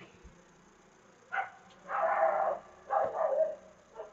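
Three short animal calls, the middle one the longest, starting about a second in, over a quiet room.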